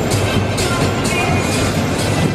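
Music played loud over a football stadium's public-address loudspeakers, with a beat, in a large open bowl.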